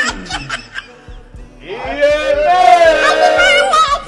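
Brief laughter, then from about two seconds in a group of men's voices chanting on long, held, wavering notes, growing loud.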